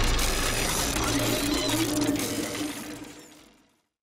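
Mechanical gear sound effects of an animated title sequence, fading away steadily and gone about three and a half seconds in.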